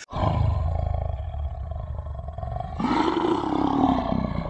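Lion roar sound effect for a channel intro: a deep, rumbling roar that starts suddenly, then a louder roar that rises and falls in pitch near the end.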